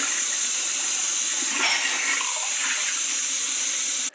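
Kitchen faucet running steadily into a sink as dishes are rinsed under the stream.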